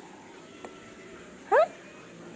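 A boy crying: mostly quiet between sobs, with one short rising whimper about one and a half seconds in.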